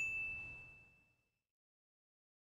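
A high, clear ding sound effect, a single bell-like tone ringing out and fading away over about a second and a half.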